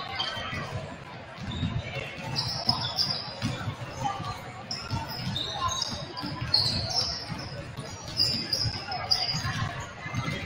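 Several basketballs dribbled on a hardwood gym floor during warm-ups, their bounces overlapping irregularly in a large echoing hall, with short high sneaker squeaks among them.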